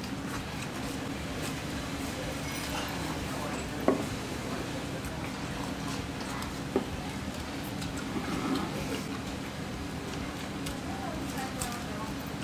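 Diner room sound with eating at the table: a steady low hum and background voices, broken by a few sharp knocks, the loudest about four seconds in and another near seven seconds.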